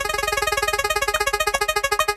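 Spinning-wheel sound effect of an online prize wheel: a rapid run of electronic ticks that gradually slow as the wheel comes to rest.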